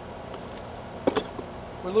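Two or three short, sharp clinks a little over a second in, over a steady faint background hum.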